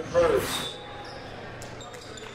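A brief voice and a short swoosh of a broadcast transition effect in the first moment, then the steady quiet room tone of a gymnasium.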